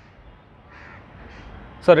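A quiet pause with a faint bird call in the background about a second in, then a man's voice briefly near the end.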